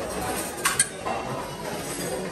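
Metal serving utensil clinking twice in quick succession against a buffet serving tray, about two-thirds of a second in, over the murmur of a busy dining room.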